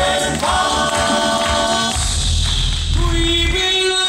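All-male a cappella group singing live in close harmony over a deep bass voice. Near the end the bass and lower parts drop away, leaving one voice holding a long note.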